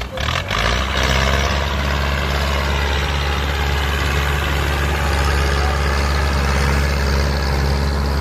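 Massey Ferguson 185 tractor's four-cylinder diesel engine running loud and steady under heavy load as it strains to pull a trailer of rice sacks up a muddy bank, struggling to make the climb. A few short knocks come just before the engine note settles in.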